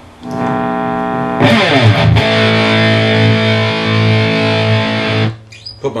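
Electric guitar with a bridge humbucker played through an Electro-Harmonix Metal Muff distortion pedal and a Randall amp: a heavily distorted chord rings out, then slides down into a low chord held for about three seconds before being cut off.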